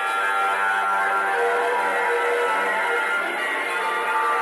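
Live instrumental music led by a plucked electric bass, recorded straight from the mixing console and sounding thin and poor in quality, with almost no deep low end.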